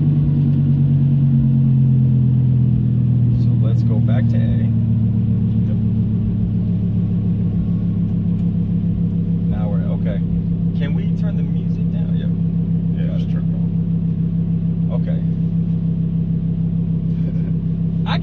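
Lamborghini Huracan's V10 engine idling in race mode with its exhaust valves open, heard from inside the cabin. The idle settles a little lower over the first few seconds, then runs steady.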